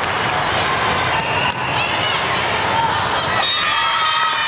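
Din of a busy indoor volleyball tournament hall: steady crowd chatter and shouted calls, with sharp volleyball impacts among them, the clearest about a second and a half in.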